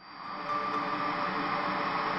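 Electronic noise sound effect for a glitch-style logo animation, a dense static-like hiss that swells in over about half a second and then holds steady.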